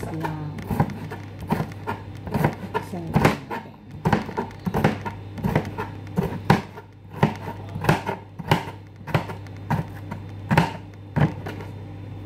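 Chef's knife slicing bitter melon (ampalaya) thinly on a plastic cutting board: a run of irregular knife strikes on the board, about two a second.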